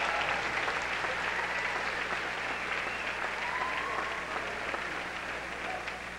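Audience applauding after a dance performance, the clapping fading slowly.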